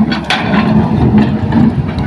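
Hitachi hydraulic excavator's diesel engine running under load as the bucket digs into soil and rock, with a few short knocks and scrapes of stones.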